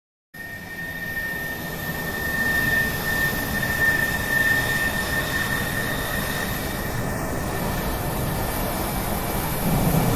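Jet aircraft engines running: a steady rushing noise with a high, held whine, building over the first few seconds.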